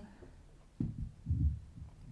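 A pause in speech holding a few soft low thumps, about one second in and again shortly after: handling noise on a handheld microphone.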